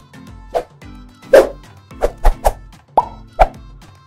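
Background music with a steady low beat, overlaid by a string of about seven short pop sound effects from a logo transition. The loudest pop comes about a second and a half in.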